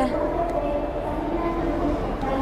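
Soft held background music notes shifting to a new chord partway through, over a low steady rumble.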